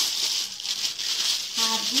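A thin plastic milk bag crinkling and rustling as it is handled, with irregular crackly ticks.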